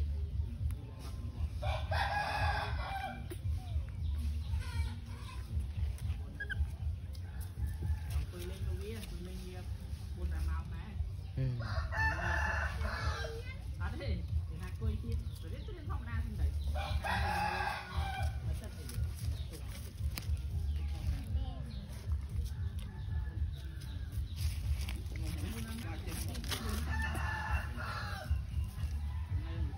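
A rooster crows four times, each crow lasting about two seconds, over a steady low rumble.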